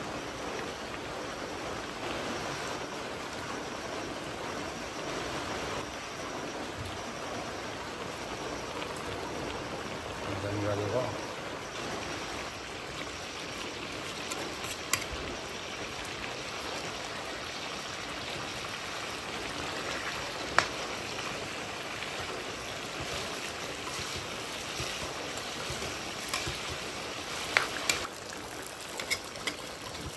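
Duck meat sizzling steadily as it fries in a large aluminium wok. In the second half a ladle knocks sharply against the pan a few times, most often near the end.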